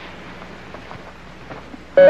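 Low steady hiss of background noise on an old television soundtrack, with no distinct sound event.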